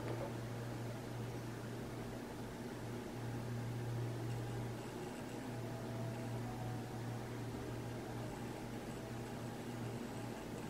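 Steady low hum with an even background hiss: room tone, with no distinct event.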